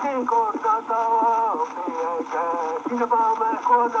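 A century-old digitized wax-cylinder recording of a man singing in Menominee, in short phrases of held notes that slide at their ends. The sound is thin and narrow, with a steady hiss of cylinder surface noise underneath.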